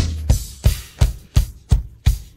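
A drum-kit beat, with kick-drum and snare strokes about three a second, opening the program's music jingle.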